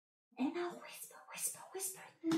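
Soft, whispered speech: the word 'brown' spoken quietly and in a whisper, beginning after a brief silence.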